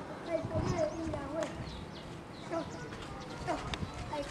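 Faint, indistinct talking in the background, with a few light knocks.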